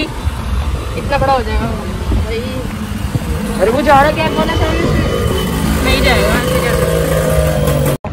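Street traffic noise, a steady low rumble of vehicles, with people's voices talking indistinctly now and then and a steady engine hum in the last couple of seconds.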